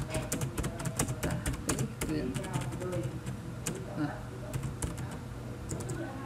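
Computer keyboard being typed on, rapid key clicks in quick runs, densest over the first two seconds and then sparser and more scattered.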